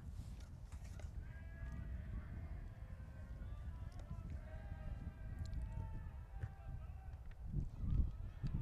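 Faint, distant voices of players and spectators calling out across a baseball field in drawn-out shouts, over a steady low rumble.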